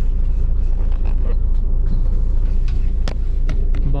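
Steady low rumble of a moving bus heard from inside the cabin, engine and road noise together, with a few short rattles or clicks, the sharpest about three seconds in.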